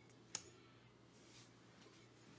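Near silence with one faint, sharp click about a third of a second in, from tarot cards being handled on a glass tabletop.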